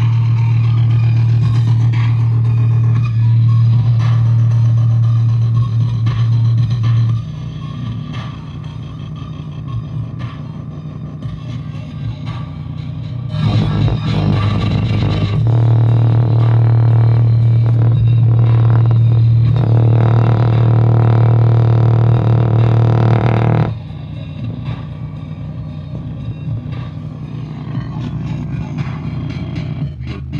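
Sony car speaker driven hard by a small amplifier board, playing a steady low bass tone. The tone is loud for about the first seven seconds, drops back, then comes back loud from about thirteen to twenty-four seconds before dropping back again.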